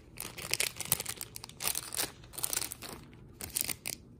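Clear plastic cellophane treat bags crinkling as they are handled, in irregular bursts of crackle.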